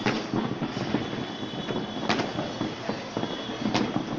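Fireworks going off at a distance: a dense, continuous crackle with three sharper bangs, one at the start, one about halfway and one near the end.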